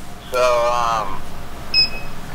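A short, high electronic beep from a vending machine's card reader near the end, after a drawn-out vocal sound of under a second.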